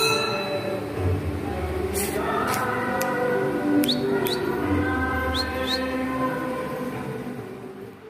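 Several voices singing a devotional song together in sustained melodic lines, with a few sharp strikes heard from about two seconds in. The singing fades away near the end.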